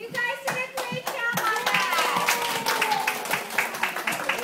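Hands clapping in a quick, steady rhythm, about four or five claps a second.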